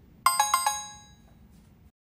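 A short, bright chime sound effect: about four quick ringing notes within half a second, fading out within a second, marking the switch to a quiz question.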